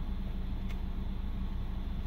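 Volkswagen Jetta's engine idling steadily, heard from inside the cabin, with the automatic transmission in drive. There is one faint click under a second in.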